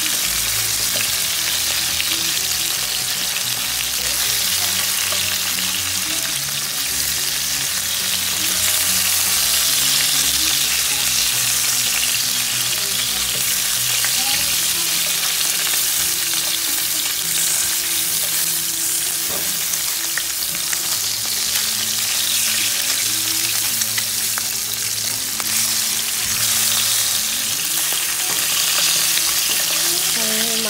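Fish pieces sizzling steadily as they shallow-fry in hot oil in a nonstick frying pan. A slotted spatula scrapes and turns them now and then, with a few light clicks against the pan.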